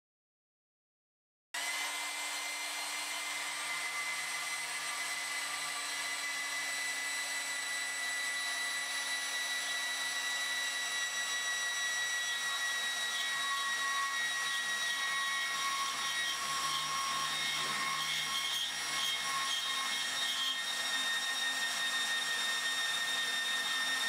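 Milwaukee HD18 BS 18-volt cordless bandsaw cutting through 1½-inch schedule 80 steel pipe: a steady motor and blade whine with the rasp of the blade in the thick-walled steel. It starts suddenly about a second and a half in, its whine sinking slightly as the cut goes on, and stops as the blade comes through near the end.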